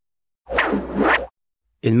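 A short whoosh transition sound effect, lasting just under a second, leading from the episode into a sponsor ad.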